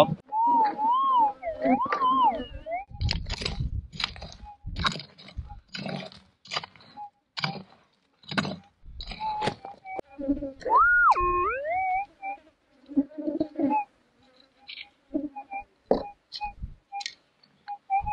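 Minelab GPX 6000 metal detector sounding a target: a wavering tone that rises and falls in the first few seconds and again around the middle, as a plastic scoop of dirt holding a small gold nugget is passed over its coil. In between come the scrapes and knocks of the scoop digging in stony ground.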